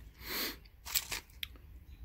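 Small plastic parts bag crinkling as it is handled, with a few light clicks from the aluminum wheel hexes inside shifting against each other.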